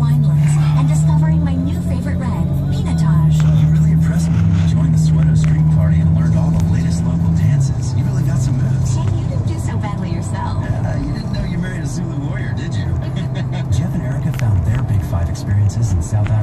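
Music from the car radio, the bed of a tourism commercial, playing in a moving car's cabin over engine and road noise. A held low tone carries the first half, then the music moves to lower, shifting notes.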